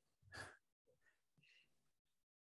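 Near silence, with one brief, soft breath from a man about half a second in.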